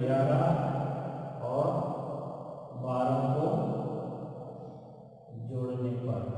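A man's voice chanting in long, drawn-out phrases, one after another, each starting loud and fading away before the next begins.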